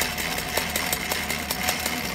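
An old treadle sewing machine converted for Al Aire embroidery running steadily, its needle stitching in a quick, even rhythm of clicks over a low mechanical hum.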